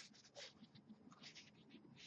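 Near silence with a string of faint, short taps: fingers typing a name on a mobile phone's touchscreen.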